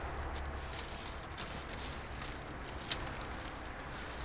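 Faint pattering and ticking of small, cold, brittle propolis pieces as they are scooped by hand from a metal tray into a plastic snack bag, with one sharper click about three seconds in.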